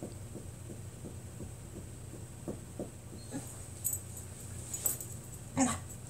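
A puppy squirming on its back on a blanket, making short, faint little noises among the soft rustle of the fabric, with one sharper, louder sound near the end.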